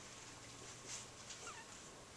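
Quiet room tone with a steady low hum. There is a soft brief rustle about a second in, then a few faint short squeaks.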